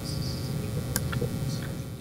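Room tone of a lecture hall: a steady low hum with a few faint clicks, the clearest about a second in.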